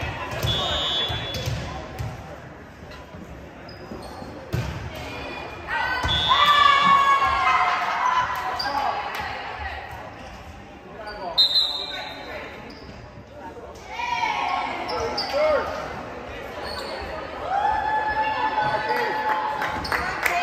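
Players shouting and cheering in a large, echoing gym during a volleyball match, with several sharp thuds of the ball being struck. About eleven seconds in there is a short, high, steady whistle.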